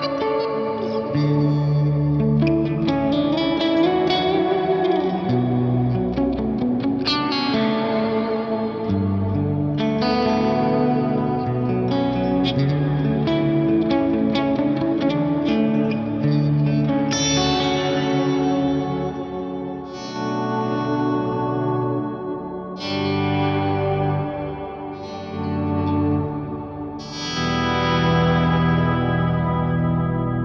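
Clean electric guitar played through an Axe-Fx III's Plex Delay block on its 'Subtone Shimmer' preset. Sustained chords come about every two to three seconds, each followed by an octave-down shimmer and long echo and reverb tails that wash into the next chord.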